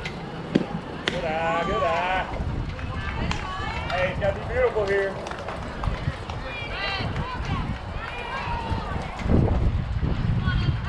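A softball bat strikes the ball with a sharp crack about half a second in. Several people then yell and cheer as the batter runs. A low wind rumble on the microphone swells near the end.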